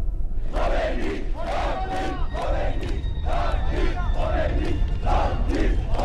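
A large crowd chanting and shouting in unison, loud, its calls coming in a steady beat of about two a second.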